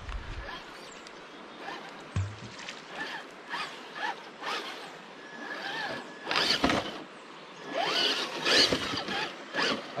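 Traxxas TRX-4 Sport RC rock crawler's brushed electric motor and gear drive whining in short throttle bursts that rise and fall in pitch as it crawls over rock.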